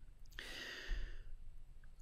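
A faint breath from the narrator, a soft hiss lasting just under a second, taken close to the microphone in the pause between sentences.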